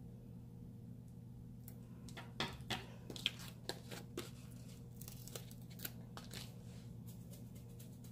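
A sheet of planner stickers being handled on paper pages: a run of crinkling rustles and sharp crackles for a few seconds in the middle, over a steady low hum.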